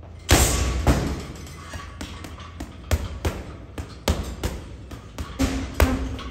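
Boxing-gloved punches landing on a Title Boxing heavy bag, a quick, irregular string of thuds in short combinations. The hardest shot comes about a third of a second in.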